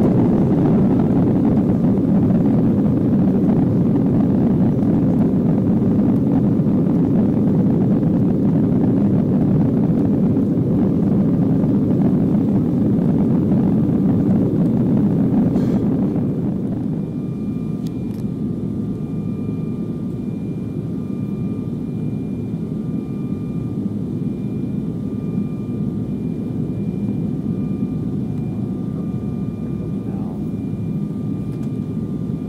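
Cabin noise of an Embraer 195 jet airliner just after a night takeoff: the CF34 turbofans and the rushing air make a loud, steady rumble. About halfway through the rumble drops noticeably and thins out, and faint high steady tones come and go behind it.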